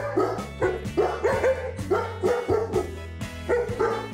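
A German Shepherd-type dog giving short repeated calls, about two a second, over background music.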